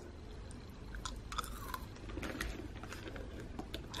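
Faint chewing of a piece of chewing gum, with soft wet mouth clicks.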